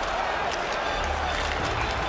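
Steady crowd noise in an ice hockey arena, heard through a TV broadcast.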